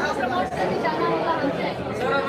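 Speech: a woman talking, with other voices chattering behind her.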